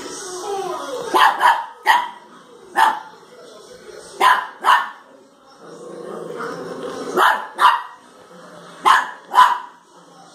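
Small dog barking in short, sharp barks, about ten in all, mostly in quick pairs with pauses of a second or more between them.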